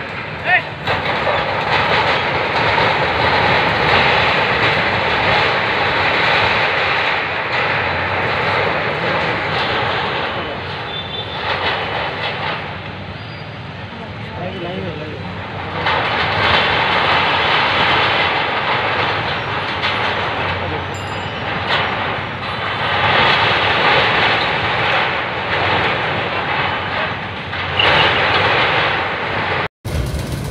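Demolition excavators running and working, a loud continuous mechanical din that rises and falls as the machines tear at concrete and sheet metal. It eases for a few seconds about halfway through and cuts off abruptly just before the end.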